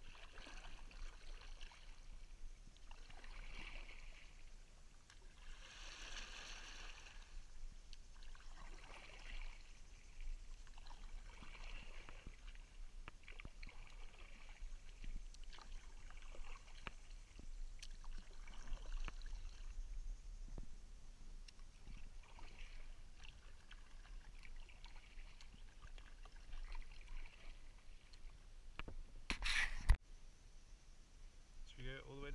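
Sea kayak paddle blades dipping and pulling through calm, shallow sea water, a soft splash-and-swish about every two and a half to three seconds. A single sharp knock comes near the end.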